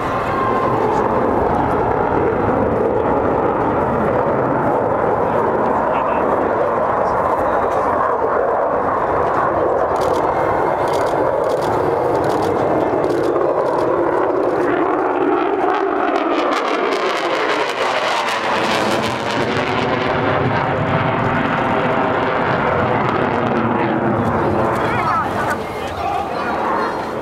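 Military jet flying past overhead: a loud, steady jet engine noise, with a sweeping shift in its tone about two-thirds of the way through as the jet passes over.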